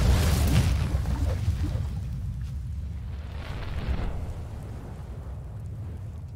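Explosion sound effect for an animated fireball logo intro: a deep rumbling boom that slowly dies away, with a brief rushing swell about four seconds in.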